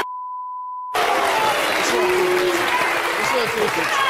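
Broadcast censor bleep: a steady pure tone near 1 kHz lasting about a second, with all other sound cut out beneath it, masking a spoken word. Then voices and studio audience noise come back.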